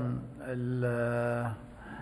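A man's voice holding a long, level "ehhh" hesitation sound for about a second before he goes on speaking.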